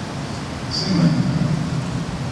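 A man's voice speaking briefly and indistinctly, about a second in, over steady background hiss and hum.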